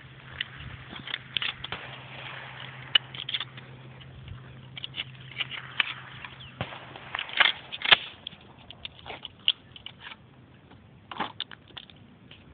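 Scattered light clicks, crackles and rustles of a camera being handled and moved, over a faint steady hum that stops about seven seconds in.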